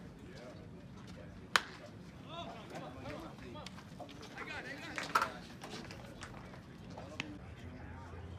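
One sharp crack about a second and a half in, a wooden bat hitting a pitched baseball, then a fainter pair of knocks around five seconds, with people talking in the background.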